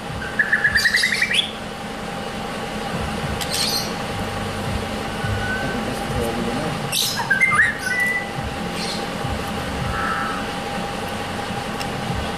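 Caged white-rumped shamas (murai batu) calling: a quick rising run of chirps near the start, then scattered short calls and whistled notes, with a brief cluster of calls about seven seconds in.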